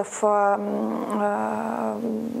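A woman's drawn-out hesitation sound, a long creaky "э-э-э", held for over two seconds after a brief word while she searches for the next words.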